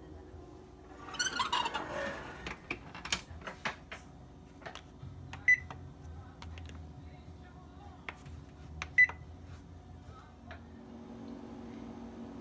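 Clatter as the oven rack and door are pushed shut, then small clicks and two short, sharp electronic beeps from the oven's control panel as its timer keys are pressed.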